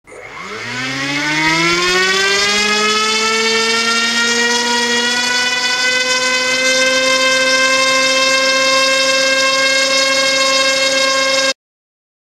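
Small brushless motor spinning an HQ 5x3 mini-quad propeller on a thrust stand. It rises in pitch over the first two seconds as it is throttled up, then holds a steady whine at roughly hover thrust of about 150 grams, and cuts off suddenly near the end.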